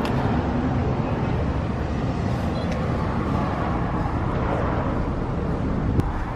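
Steady street traffic noise, a continuous low rumble of passing road vehicles with no distinct single event.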